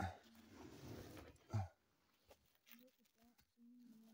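A man grunting with effort, twice, while moving about in a cramped dirt hole, with a second or so of rustling and scraping at the start.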